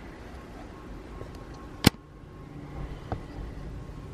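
Handling noise from a handheld camera being moved: a low, steady rumble with a sharp click about two seconds in and a fainter click about a second later.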